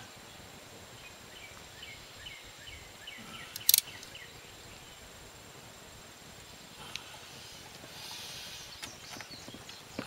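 Quiet outdoor background with faint chirping, broken by one sharp click a little over three and a half seconds in and a fainter one near seven seconds, as a ratchet works a seized two-piece spark plug a tiny bit back and forth.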